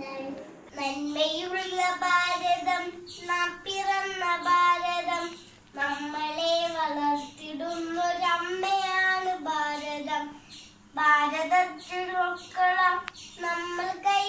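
A young girl singing a song solo, in sung phrases with short breaks between them.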